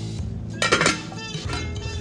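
Metal cookware clinking in a brief clatter with a short ring, about two thirds of a second in, over steady background music.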